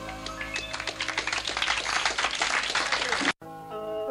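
The last chord of a live rock band's song rings out, then a small studio audience applauds. The applause cuts off suddenly about three-quarters of the way through, and an electric guitar starts playing single notes.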